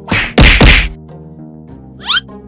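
Three quick whacking punch sound effects in under a second, the last two loudest, over steady background music.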